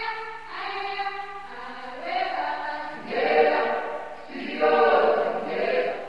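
A choir of voices singing together in held phrases a second or two long, growing louder in the second half.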